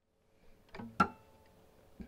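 Acoustic guitar being handled: one sharp click about a second in, followed by strings ringing faintly for a moment, with a softly spoken word just before it.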